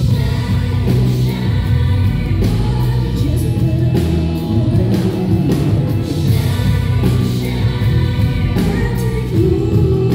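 Live band music with singing in long, held notes over a steady bass-heavy accompaniment.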